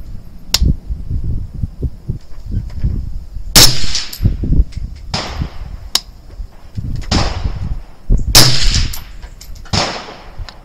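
Rifle shots on an outdoor range: about six reports of differing loudness, from a 6mm ARC rifle firing a three-shot group among other gunfire. The loudest shots, near four and eight seconds in, trail off in an echo.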